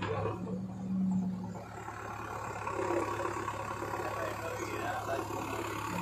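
The diesel engine of a JCB backhoe loader running steadily, a low even drone.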